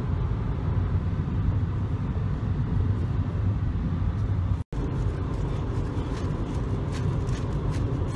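Steady low rumble of road and engine noise inside a moving car's cabin, cut by a split-second dropout to silence just past halfway.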